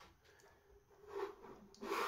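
Faint rubbing and handling sounds from a selfie-stick tripod as its phone clamp head is turned upright, a little louder about a second in and near the end.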